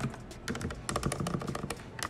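Typing on a Logitech MX Mechanical keyboard with its low-profile red linear switches: a quick, uneven run of key strokes, fairly quiet for a mechanical keyboard.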